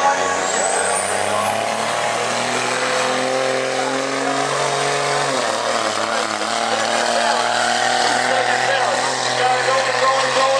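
Pickup truck engine at full throttle, dragging a weight-transfer pulling sled down the track. A high whine rises in pitch over the first few seconds, then holds steady and high. The engine note shifts lower about five seconds in.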